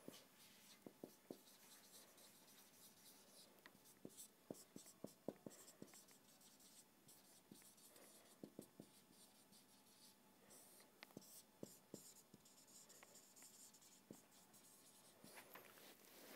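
Faint marker pen writing on a whiteboard: short strokes in irregular clusters as words are written out.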